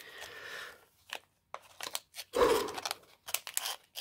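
Foil wrapper of a sealed trading-card pack crinkling as it is picked up and handled, with a few light taps and clicks in between; the loudest crinkle comes a little past halfway.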